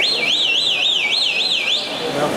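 A high warbling tone that slides up and down about four times a second, cutting in suddenly and stopping just under two seconds later.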